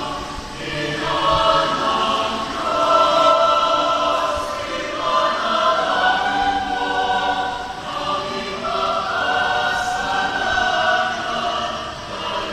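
Mixed SATB choir singing sustained, chordal phrases that swell and ease, with three louder swells.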